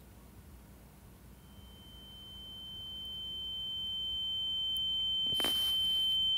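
A single high-pitched steady electronic tone, like a sine-wave ring, fading in slowly from near silence and growing louder; an added dramatic sound effect. A brief hiss sounds shortly before the end.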